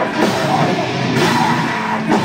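A deathcore band playing live: heavily distorted guitars, bass and a pounding drum kit with crashing cymbals, the vocalist screaming over it.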